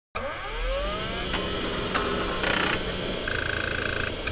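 Synthesized sound effects: a rising electronic sweep over a low rumble, then static-like noise with a short glitchy burst, and a steady high electronic tone in the last second.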